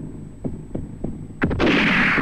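A heartbeat-style sound effect of low, even thumps, about three a second. About one and a half seconds in, a sharp crack is followed by a loud rushing noise that slowly fades.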